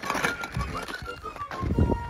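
Footsteps crunching and knocking over loose, porous basalt lava rock, with a few thin whistled notes wavering over them.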